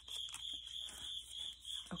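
Soft rustling and handling of small paper envelopes as they are pulled out of a pocket-letter sleeve, over a steady high-pitched background tone.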